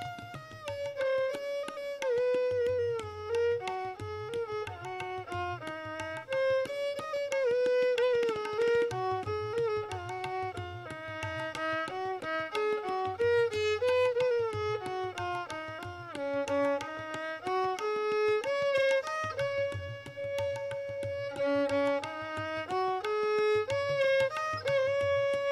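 Violin played in Indian classical style: a single melody line that slides and bends between notes. Tabla strokes accompany it in short spells.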